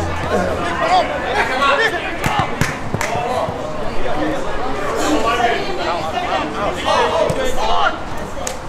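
Several voices shouting and calling across a football pitch, overlapping, with a few sharp knocks between about two and four seconds in.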